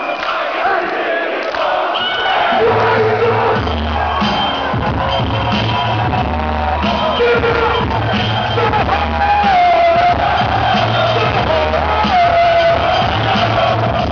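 Live hip-hop music played loud through a concert PA, with a heavy bass beat dropping in a couple of seconds in and repeating steadily. A crowd cheers and voices carry over the beat.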